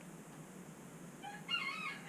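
A rooster crowing, starting a little over a second in and running on past the end.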